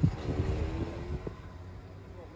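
Wind gusting on the microphone in low rumbling buffets, with a faint steady hum for about a second. The buffeting dies down about one and a half seconds in.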